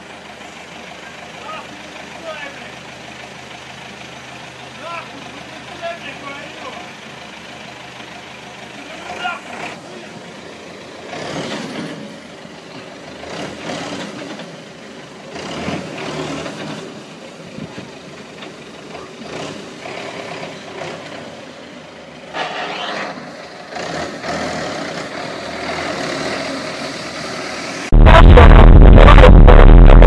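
A person's voice, in irregular bursts over a steady low background noise. About two seconds before the end, loud music cuts in abruptly.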